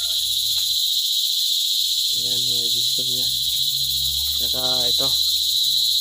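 Steady, high-pitched chorus of insects trilling without a break.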